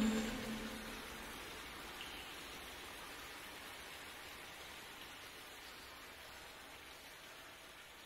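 The end of a song: the last held note dies away within the first second, leaving a faint, even hiss like light rain that slowly fades out, with one small tick about two seconds in.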